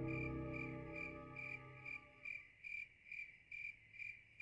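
A cricket chirping steadily, a little over two high chirps a second. Soft background music with sustained tones fades out under it over the first two seconds or so.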